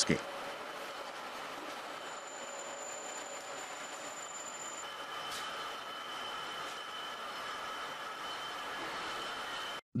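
Steady machinery noise of a small steel-rod rolling mill at work, with roll stands and gearboxes running. Faint thin high tones run over it, one of them starting about halfway through. It cuts off just before the end.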